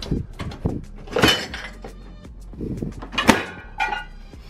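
Plastic clicks and knocks of a dishwasher being closed up: the detergent cup lid snapping shut, then the door shut with a louder clunk a little past three seconds in.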